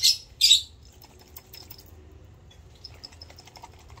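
Faint chirping of small cage birds, after two short scratchy sounds in the first half second.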